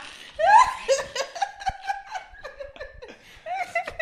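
Two men laughing hard, a long laugh that rises sharply, holds on a drawn-out high note, dies down briefly near the three-second mark and then breaks out again.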